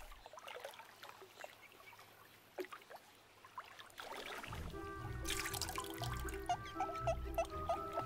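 Faint trickling and dripping of pond water, then background music comes in about halfway through, with a pulsing bass and short repeated notes.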